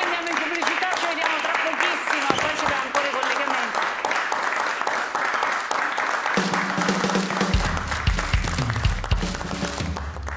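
Studio audience applauding throughout. About six seconds in, the show's closing theme music comes in under the clapping, with steady tones and a low bass.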